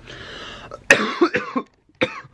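A man coughing into his fist: a breathy rasp, then a sharp cough about a second in followed by a short rough run of coughs that stops suddenly.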